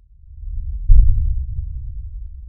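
A logo-sting sound effect: a deep low rumble swells up, a single heavy boom hits about a second in, and the rumble then slowly dies away.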